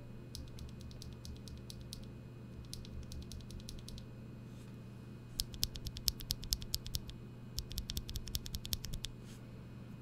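A lubed Holy Panda tactile mechanical keyboard switch, held loose in the fingers, pressed and released rapidly: a quick run of sharp, clacky clicks, faint at first and louder from about halfway in. The switch is lubed with Krytox 205g0.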